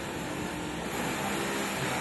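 Steady mechanical whirring background noise, even throughout with no distinct events.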